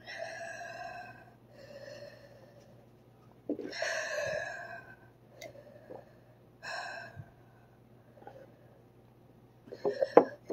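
A person breathing heavily through an open mouth, four long breaths, to ease the burning from an extremely hot chip.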